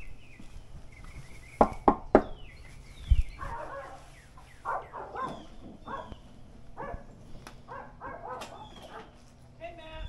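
Three quick, sharp knocks on a front door about one and a half seconds in, followed by faint, muffled sounds from inside the house.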